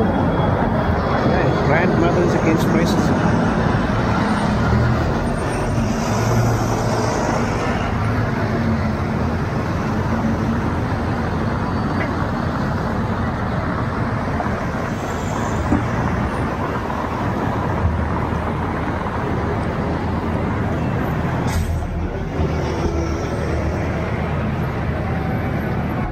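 City street traffic noise: double-decker bus engines running close by and passing vehicles, a steady low hum under a constant wash of road noise.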